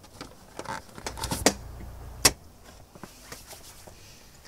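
A letter pushed through a metal door letterbox: the sprung flap clicks and rattles as the paper goes in, then snaps shut with a sharp clack a little over two seconds in.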